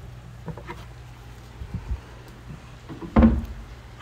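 Faint scattered clicks of a Phillips screwdriver working the adjustment screw of a concealed cabinet-door hinge, loosening it to pull a sagging door back into line, then a short low thump about three seconds in.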